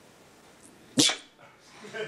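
A person sneezing once, sharp and sudden, about a second in.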